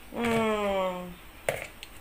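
A woman's drawn-out hesitation sound, a held 'e-e-e' sliding slightly down in pitch for about a second, followed by a single sharp click.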